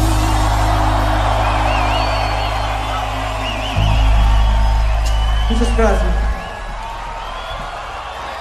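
Rock band on a festival stage holding a loud, sustained low note that shifts to a new note about halfway through and stops about six seconds in, leaving the crowd cheering and whistling. A man shouts just before the note ends.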